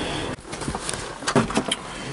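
Light knocks and clicks of someone settling into the driver's seat of a small electric microcar, coming after a steady hiss that stops abruptly shortly after the start.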